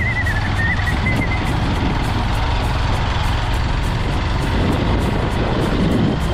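Motorcycle running along a dirt road, a steady low rumble mixed with heavy wind noise on the action-camera microphone. A faint wavering high tone sounds in the first second and a half.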